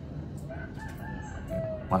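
A rooster crowing once in the distance: a faint, drawn-out call of about a second that starts about half a second in.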